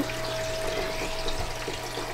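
Aquarium water circulating: the steady trickle and splash of filter and aeration water at the tank surface, over a constant pump hum.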